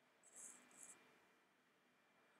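Near silence: room tone, with two brief faint hissy sounds about half a second and a second in.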